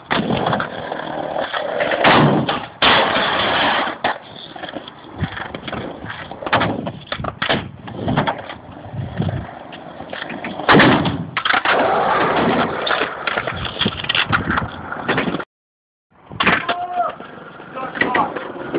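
Skateboard rolling on concrete with a gritty wheel noise, broken by several loud clacks and slaps of the board hitting and landing. The sound cuts out completely for under a second near the end, then the rolling and knocking carry on.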